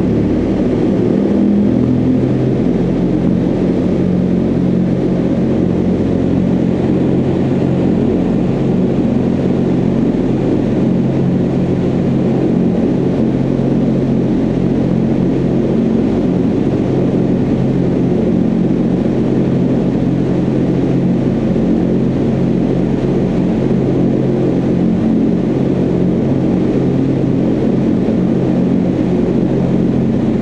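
Vertical wind tunnel for indoor skydiving running at flight speed: a loud, steady rush of air with a low fan hum underneath, the hum settling to a steady pitch about two seconds in.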